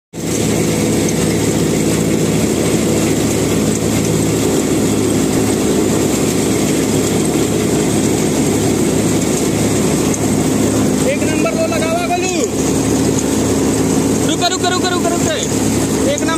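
Combine harvester running steadily as its unloading auger pours grain into a tractor trolley, an even machine drone throughout. A voice is heard briefly three times in the last few seconds.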